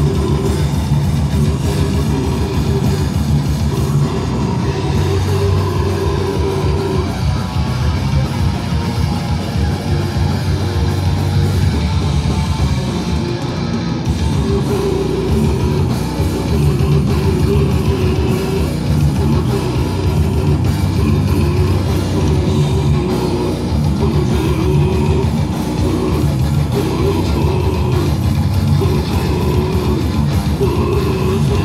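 Death metal band playing live and loud: heavily distorted electric guitars and bass over a drum kit, with a harsh-voiced vocalist.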